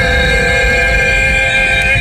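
A woman's voice holding one long sung note with a slight waver, cutting off near the end, over the low rumble of a moving car's cabin.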